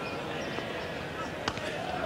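A cricket ball struck by the bat: one sharp knock about one and a half seconds in, over the steady murmur of a large crowd.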